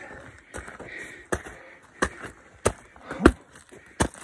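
Hiking footsteps on rocky ground and ice: a steady walking rhythm of sharp footfalls, about one every two-thirds of a second.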